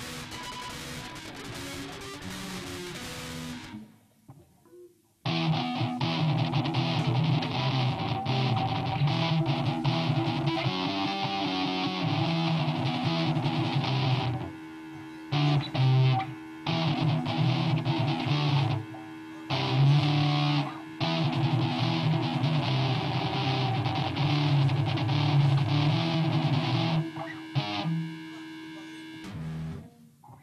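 Electric guitar played through a distorted amplifier, with bass guitar, running through a riff. Softer playing at first, a short break about four seconds in, then loud riffing that stops and restarts several times before ending near the close.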